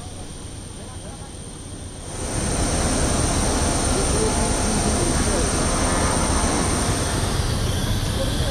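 Jet aircraft noise on an airport ramp: a steady high whine over a rumbling roar, which comes in suddenly and loud about two seconds in and holds steady.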